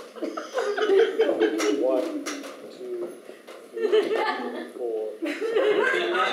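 Several people chuckling and laughing at a table, in bursts that rise and fall, mixed with indistinct talk.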